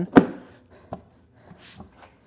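A NEMA 14-50 plug pushed home into its wall receptacle with one sharp clunk, followed by a faint click about a second later.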